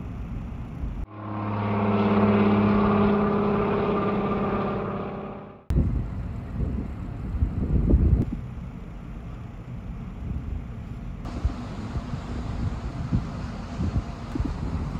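A floatplane's piston engine and propeller drone past in a steady pitched hum, swelling and then easing off before cutting off suddenly about six seconds in. Before and after it, wind buffets the microphone in low, gusty rumbles.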